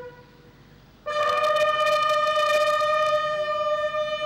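Military bugles sounding long held notes of a ceremonial call. A held note dies away at the start, and after about a second's pause a higher note comes in and is held for about three seconds.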